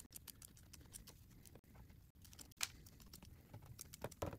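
Scissors snipping through plastic mesh pot screening: a run of faint small clicks, one a little louder about two and a half seconds in.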